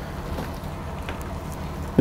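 Steady low background rumble with no distinct events: even ambient noise between the speaker's sentences.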